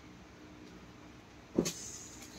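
Faint steady room hiss with a low hum, then a single sudden handling thump about a second and a half in, followed by a brief rustle as the packed clothing is handled.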